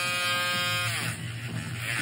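Electric nail drill with a sanding band spinning with a steady high whine, which drops in pitch and falls away about a second in as the band goes onto the toenail, leaving a low motor hum.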